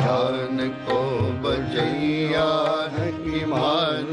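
Sikh kirtan music in an instrumental passage between sung lines: a bowed dilruba plays a wavering, gliding melody over drum strokes.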